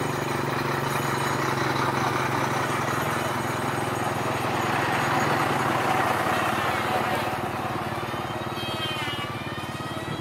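Bus and lorry engines idling in a queue of stopped vehicles: a steady low hum under street noise, with voices coming in near the end.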